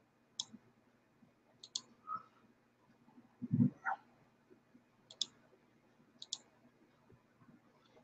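A few faint, sharp clicks spread out over a pause, some in close pairs, with one brief low sound about three and a half seconds in.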